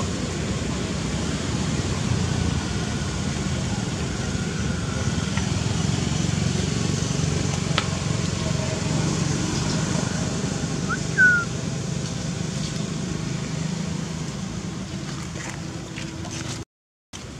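Steady low outdoor rumble with no clear source, with one brief high squeak about eleven seconds in.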